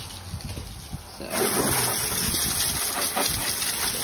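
A pressurised water spray switches on about a second in and hisses and spatters steadily over a car's engine bay.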